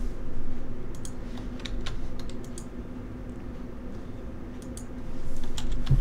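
A few scattered computer keyboard keystrokes and mouse clicks, in small groups about a second in, around two seconds in and near the end, over a low steady hum.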